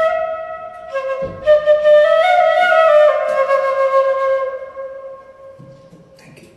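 Bamboo transverse flute playing a melody. After a breath break about a second in comes a closing phrase of stepped notes, ending on a long held low note that fades away.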